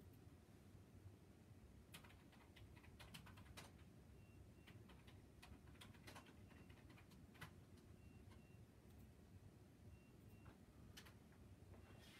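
Faint, scattered computer keyboard keystrokes and clicks over near-silent room tone, someone typing at a computer.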